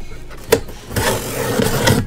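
Utility knife slicing through the packing tape on a cardboard shipping box: a sharp click about half a second in, then about a second of continuous scratchy cutting noise as the blade is drawn along the seam.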